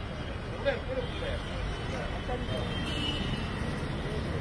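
Street ambience: a steady low rumble of traffic with faint voices of people nearby.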